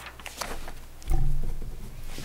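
Sheets of paper rustling as they are handled and passed along a table, followed about a second in by a short, low, muffled rumble that is the loudest sound here.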